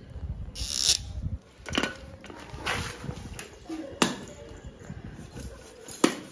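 Bicycle hand pump inflating a tyre: a short burst of hiss about half a second in as the hose is fitted to the valve, then a few sharp pump strokes about a second apart.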